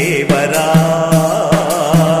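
Telugu devotional bhajan to Ganesha: a man's voice holding a sung line over a low steady accompaniment, with percussion strikes roughly twice a second.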